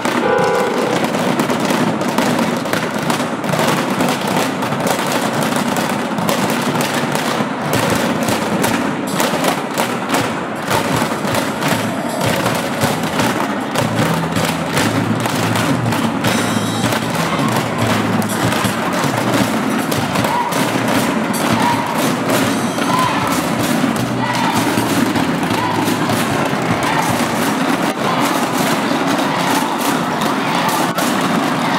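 A large group beating on basins as hand drums: a dense, unbroken stream of loud strikes.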